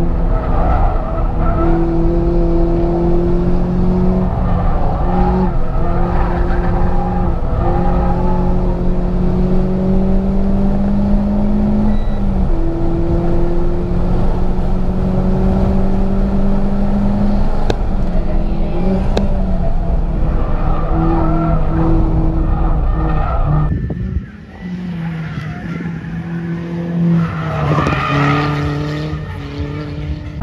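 In-cabin sound of a Renault Sandero RS's 2.0-litre four-cylinder engine pulling hard on track: its note holds high and climbs slowly through each gear, then drops at each upshift. A bit after 24 s the loud engine note gives way to a quieter sound.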